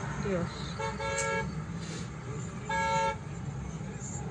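Two short car horn toots, each about half a second long and about two seconds apart, over a low steady rumble of traffic.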